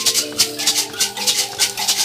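Mbira ensemble playing: two mbiras sound steady plucked notes over a pair of gourd shakers (hosho) keeping an even beat of about four shakes a second.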